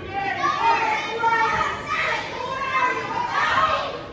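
Children's voices, talking and calling out, run continuously and fade just after the end.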